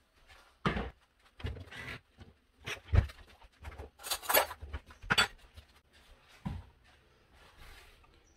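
Kitchen handling noises: a series of separate short knocks, clicks and rustles, about six in all, as a plastic bowl, a drawer and a yogurt tub are set down and handled on a worktop.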